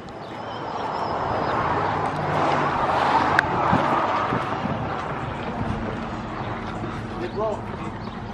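A motor vehicle going past, its tyre and engine noise swelling to a peak about three seconds in and then slowly fading, over a steady low hum.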